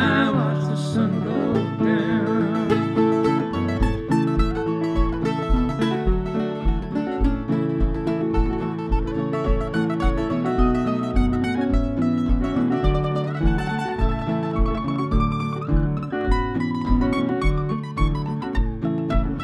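Mandolin taking an instrumental break over a strummed acoustic guitar in an acoustic folk duo. A held sung note fades out in the first couple of seconds, and a steady low beat comes in about twice a second from about four seconds in.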